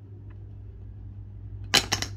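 Small hard-plastic toy donkeys falling off a stacked toy figure and clattering onto a tabletop, a quick burst of clacks near the end.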